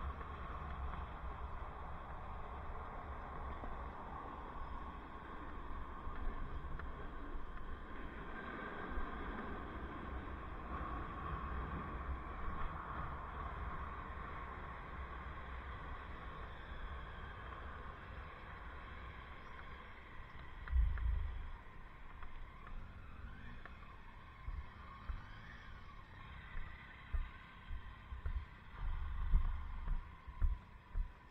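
Wind rumbling on a helmet camera's microphone while cycling, over a steady background of street traffic. A few louder low thumps come about twenty seconds in and again near the end.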